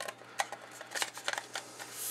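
Small plastic clicks and scrapes from an HTC Titan smartphone being put back together, its battery and back cover handled and fitted by hand. The clicks come irregularly, several bunched together a little past the middle.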